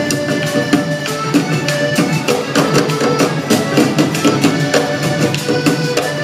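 Live Panamanian folk band playing: accordion and violin carry the tune over a steady, quick drum beat.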